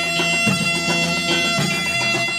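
Turkish folk music led by a bağlama (long-necked saz), with steady held tones sounding under a changing melody.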